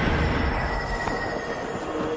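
A loud rumbling rush of noise with a thin, steady high squeal held over it.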